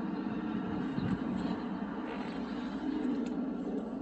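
Steady hum of a 2015 Subaru Outback heard inside its cabin.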